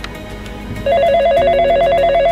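Desk telephone's electronic ringer warbling, a fast trill between two pitches that starts about a second in, signalling an incoming call.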